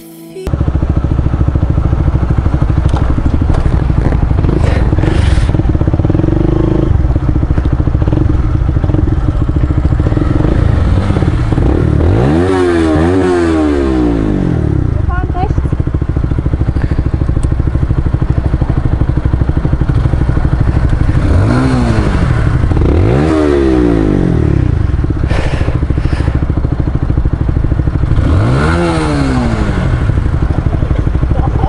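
Honda CBR125R's single-cylinder four-stroke engine breathing through an aftermarket IXIL Hyperlow exhaust. It runs steadily and then idles, with throttle blips that each rise and fall in pitch: two about twelve seconds in, two more around twenty-two seconds, and one near the end.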